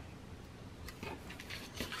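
Faint scratching and small ticks of a craft knife blade drawing through cardstock on a cutting mat, pressed down hard.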